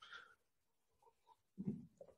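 Near silence in a pause between a man's speech, broken about a second and a half in by one short, faint, low vocal sound from the speaker.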